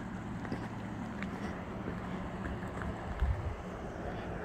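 Wind noise on the microphone: a low, uneven rumble over a steady low hum, with a stronger gust about three seconds in.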